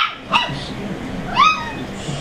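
A dog giving three short, high-pitched yips, each one rising and then falling in pitch, the last a little longer than the others.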